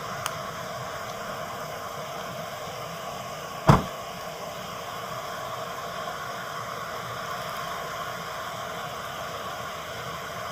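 Steady background hiss picked up by a police body camera's microphone outdoors, with one sharp knock a little under four seconds in.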